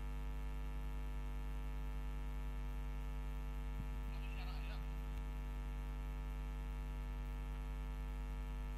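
Steady electrical mains hum, a low even buzz with many overtones, as from an idle sound system; a brief faint higher sound comes about halfway through.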